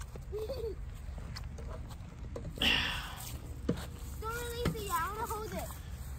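Faint voices over a steady low rumble, with a short burst of rushing noise about two and a half seconds in.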